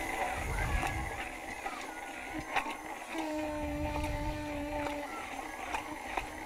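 Hand-held immersion blender running in a glass jar, its blade churning egg and sunflower oil as they emulsify into thick mayonnaise. A steady hum comes in for about two seconds midway.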